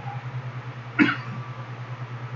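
A single short cough from a man about a second in, over a steady low hum.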